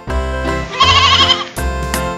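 Bright instrumental intro music for a children's song, with a single wavering lamb's bleat ("baa") about a second in, lasting around half a second.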